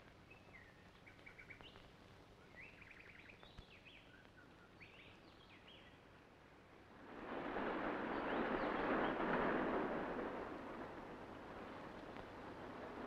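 Faint bird chirps and short calls. About seven seconds in, the wash of breaking surf swells up, then dies back.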